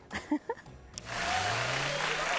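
Audience applause starting suddenly about a second in and holding steady.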